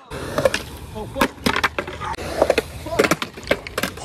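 Skateboard rolling on concrete, its wheels giving a steady rumble, with a string of sharp clacks from the board and trucks hitting the ground. A short shout of "oh" comes about a second in.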